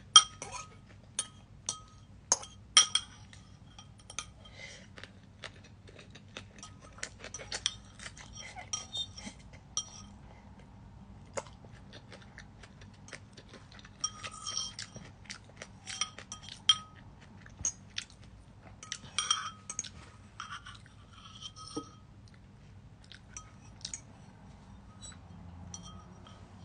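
Metal fork clinking and scraping against a glazed ceramic bowl while eating. Many sharp clinks that ring briefly, in irregular clusters, the loudest right at the start.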